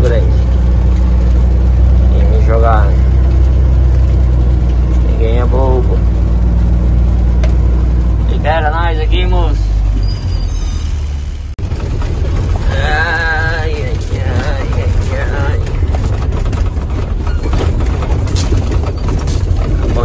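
Truck engine running steadily, heard from inside the cab as a deep, even drone. About eleven seconds in, the drone breaks off and a rougher, rattling rumble takes over.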